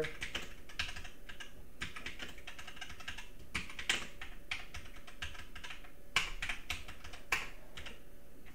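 Typing on a computer keyboard: a run of irregular key clicks, with a few sharper, louder strokes scattered through.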